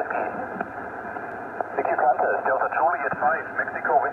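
Single-sideband shortwave reception on the 40 m band: narrow, hissy receiver audio with a distant station's voice coming through the band noise, clearer in the second half.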